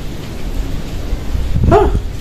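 Wind buffeting the microphone with a steady low rumble, and near the end a man's brief wailing sob.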